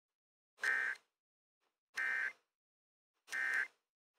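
Emergency Alert System SAME data tones sent three times in short, identical warbling bursts about a second apart: the end-of-message code that closes the weekly test. The bursts come through an FM broadcast with static riding on them.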